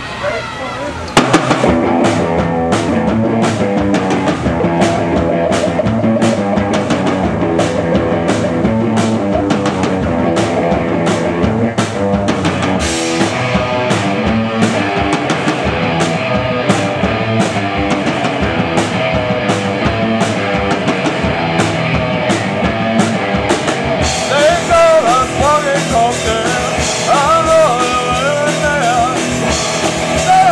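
Live rock band of two electric guitars and a drum kit starting a fast punk rock song about a second in, the drums hitting steadily under sustained guitar chords. A sung voice comes in over the band near the end.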